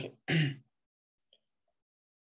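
A man clears his throat once with a short, single cough, right after a spoken "okay". A few faint tiny ticks follow in the quiet.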